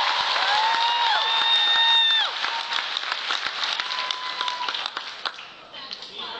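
Audience applauding and cheering, with high held cries over the clapping in the first two seconds. The applause then thins out and fades toward the end.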